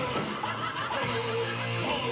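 Live heavy metal band playing, with electric guitar at the fore and a low note held for about a second in the middle.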